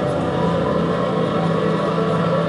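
Steady rumble of vehicle engines running, from a film's soundtrack played back over a hall's speakers and picked up by a camera in the room.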